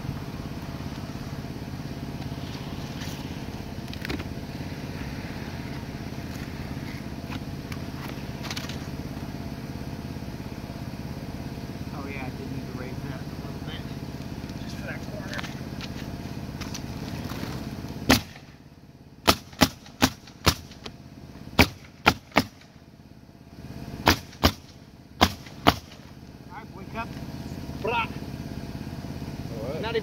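A steady motor drone, then past the middle a pneumatic roofing nailer fires about a dozen sharp shots in quick groups as shingles are nailed down.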